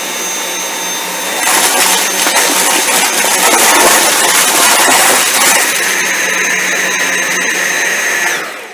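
Two Dyson cordless stick vacuums, a V7 and a V8, running together in low power mode, their motors giving a steady high whine. From about a second and a half in, the sound grows louder and rougher as the motorized cleaner heads pass over Fruit Loops cereal on carpet. After about five and a half seconds it eases back to the whine.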